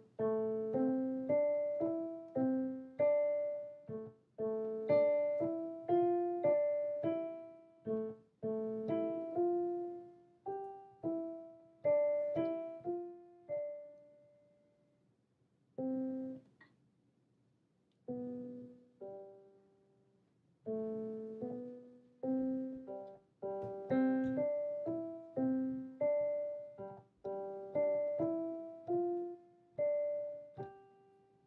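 Digital piano playing a simple beginner piece, one note after another with each note dying away, with a pause of a few seconds about halfway through before the playing resumes.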